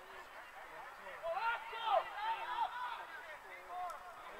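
Voices shouting and calling out across a football pitch, loudest about two seconds in.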